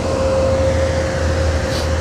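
Car wash vacuum motors running: a steady machine drone with one constant whine over a low rumble.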